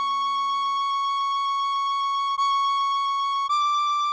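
Tin whistle playing a slow melody: a long held C# in the upper octave, sounded again about two and a half seconds in, then stepping up a semitone to D near the end. A low keyboard accompaniment chord under it stops about a second in.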